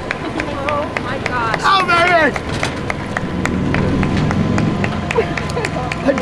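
A high-pitched excited cry with swooping pitch about two seconds in, over outdoor hubbub with scattered sharp clicks and a low hum in the second half.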